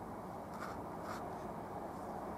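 Paintbrush stroking oil paint onto canvas: two short brush strokes about half a second and a second in, then a fainter one, over a steady low background noise.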